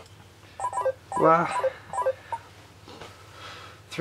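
Phone timer alarm sounding in short repeated beeps, with a man's brief laugh about a second in.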